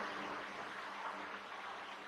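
Faint room tone: a steady low hiss with a faint low hum, as the reverberation of the previous words dies away.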